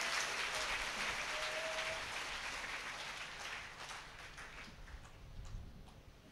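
A congregation clapping together, the applause dying away gradually over about five seconds.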